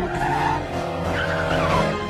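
Race cars in an animated film's soundtrack: engines revving with tyres skidding, the engine notes sweeping up and down as the cars pass.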